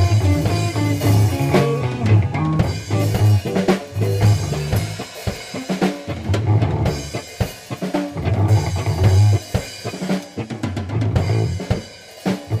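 Instrumental rock music: a drum kit playing kick and snare over a sustained bass line.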